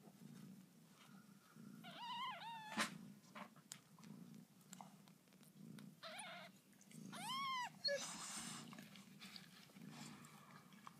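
Newborn kittens giving thin, high-pitched mews three times, about two, six and seven and a half seconds in, while they nurse. Under them runs a low pulsing rumble, the mother cat purring, and a brief rustle of the kittens jostling follows the last mew.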